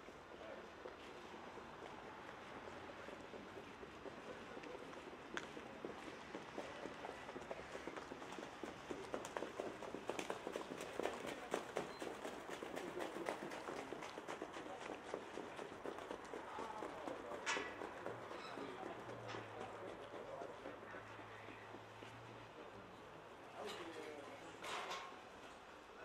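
Hoofbeats of trotting racehorses on a sand track, a fast run of strokes that grows louder to a peak about ten to thirteen seconds in, then fades. A low steady hum follows, and faint voices come near the end.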